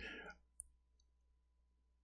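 Near silence: faint room tone with one short faint click about half a second in.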